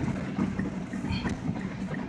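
Car moving slowly through floodwater, heard from inside the cabin: the low, steady sound of the engine and of water washing under the car.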